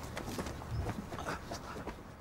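Faint shuffling footsteps and scuffing as two people stagger along together, with a short low rumble a little before the middle.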